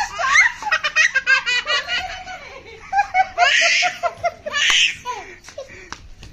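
Several people laughing hard in quick repeated ha-ha bursts, with two short, breathy, hissing laughs about halfway through.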